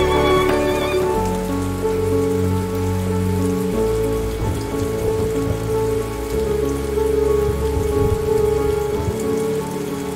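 Steady rain falling, an even hiss of drops, with slow music of long held notes playing beneath it.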